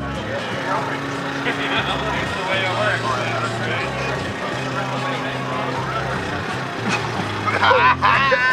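Several people chattering, with a low steady hum underneath that shifts pitch every second or so.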